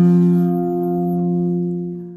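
The final chord of a song on guitar, struck just before and left ringing, a held chord that slowly fades.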